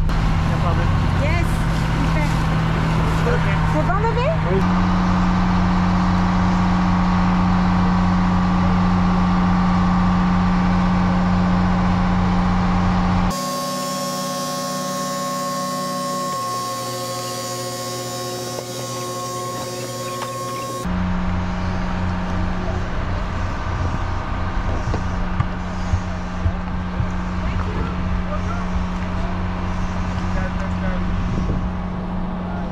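An engine running steadily, its hum stepping up slightly in pitch about four seconds in. For several seconds in the middle a quieter, different mechanical hum with a steady whine takes its place, then the first engine sound returns.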